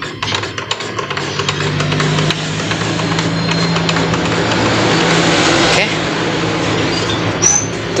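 Dry tissue rubbing on the plastic encoder disc of an Epson L3210 printer while the disc and its gear train are turned by hand. A continuous rubbing whir stops about six seconds in. The disc is being wiped of dirt, which is a usual cause of the printer's error code 000043.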